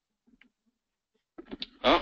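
Near silence with a few faint short clicks, then a man starts speaking near the end.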